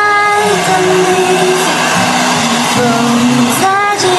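A woman singing a slow melody in long held notes over the steady rush of a hair dryer blowing close by.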